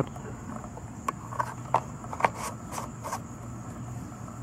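Light plastic clicks and taps, about seven of them spread over three seconds, as the mower's oil-fill cap and dipstick are put back into the filler neck and screwed down.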